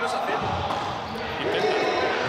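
Voices echoing in a large sports hall, with a dull thud about half a second in, as of a ball hitting the floor.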